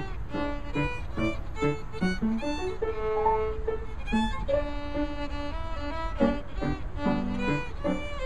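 Violin and piano playing a lively light classical piece. The violin plays quick, short notes over a detached piano accompaniment and holds one longer note about three seconds in.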